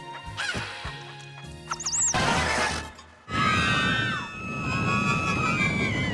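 Cartoon soundtrack music and slapstick sound effects: a loud crash about two seconds in, then from about three seconds a loud, sustained rumble with high wavering cries over it.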